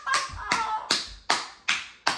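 A person clapping their hands in a steady run of five sharp claps, about two and a half a second.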